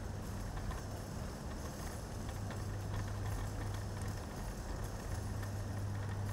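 Steady low electrical hum with an even hiss underneath: the background room noise of a church's recording system, with a few faint ticks.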